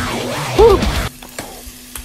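Minced garlic sizzling as it lands in hot oil in a frying pan, under background music. A short swooping tone is the loudest moment, about half a second in, and the hiss drops away after about a second, leaving the music quieter.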